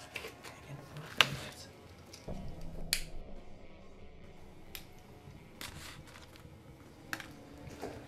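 Cigarette lighter being struck: a sharp click about a second in, another just under two seconds later, then a few fainter clicks and small knocks as the cigarette is lit and smoked, over quiet room tone.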